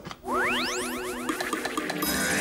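Magical sound effect: a fast upward sweep climbing high over held notes, starting about a quarter second in and followed by shimmering tones.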